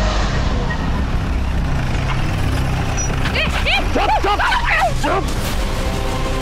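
An SUV's engine approaching under a low, droning background score; about three seconds in, a dog barks in a quick run of short barks lasting about two seconds.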